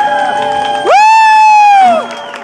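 The last chord of an acoustic guitar and keyboard rings out at the end of a song. About a second in, a listener gives a loud high "woo" that slides up, holds for about a second with a slight fall, and cuts off.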